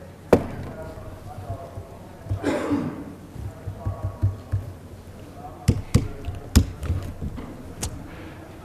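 Scattered sharp taps and knocks of hands working a keyboard on a table: one about a third of a second in, then a run of them in the last two and a half seconds. A brief, faint murmur of a voice comes around two and a half seconds in.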